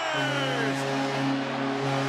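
Arena goal horn sounding one steady, low, blaring note just after a home goal, over a cheering hockey crowd.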